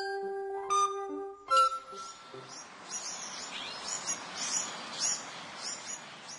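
Three ringing chime-like notes about three-quarters of a second apart, then many birds chirping and singing over a steady hiss from about a second and a half in.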